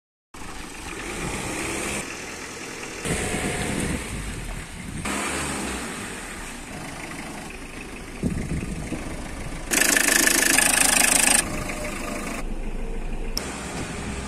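Tata Indica V2 hatchback engine running, heard in several short spliced sections that change abruptly, with a louder stretch about ten seconds in.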